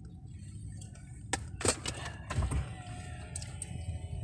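Low, steady rumble of a pickup truck's engine and tyres heard from inside the cab on a muddy dirt track, with a few sharp knocks between about one and two and a half seconds in. A faint whine runs through the second half.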